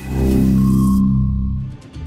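Short musical sting of a TV news segment transition: a swelling whoosh into a sustained low chord that fades out shortly before the end.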